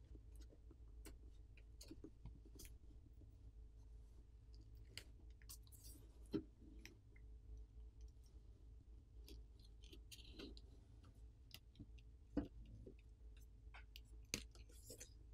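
Near silence with faint, scattered clicks and scrapes of a plastic pry pick working around the edge of a smartphone's plastic back plate to free it from its adhesive. Two sharper clicks stand out, about halfway and near the end.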